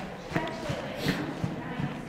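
A ridden horse's hooves thudding softly and irregularly on the dirt footing of an arena, a few dull hoofbeats a second.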